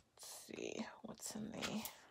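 A woman whispering a few soft words under her breath, with hissy s-sounds.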